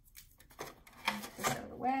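A sheet of vellum paper rustling and crackling in a series of short strokes as it is handled, with a word spoken near the end.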